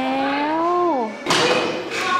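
A person's long, sing-song voice drawing out the end of a word, rising slightly and then falling away about a second in. It is followed by a sudden thump.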